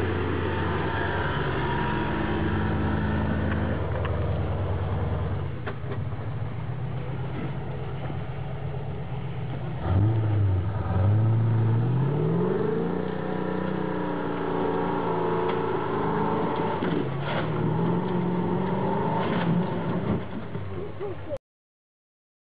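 Land Rover engine working on a steep off-road climb. It runs steadily, then revs up hard with rising pitch about ten seconds in, with a few knocks and clatters from the vehicle. The sound cuts off suddenly just before the end.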